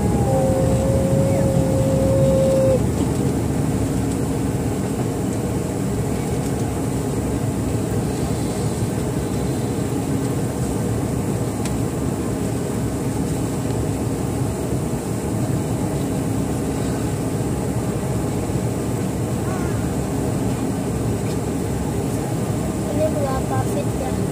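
Steady cabin noise of a jet airliner climbing just after takeoff: the low rumble of the engines and rushing air heard from inside the cabin over the wing, with a steady whine for the first couple of seconds.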